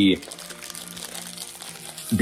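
Crinkling of a thin plastic candy wrapper being torn open and handled.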